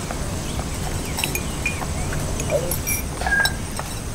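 Steady low background ambience with a few faint, short clinks and small chirps scattered through it.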